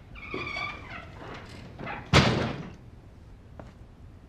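A glass-paned door's hinge squeaks briefly, then the door shuts with a loud bang about two seconds in.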